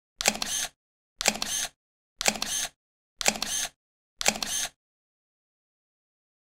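Camera shutter sounds, five of them evenly spaced about a second apart. Each is a sharp click followed by a short rattle lasting about half a second. They stop about two-thirds of the way in.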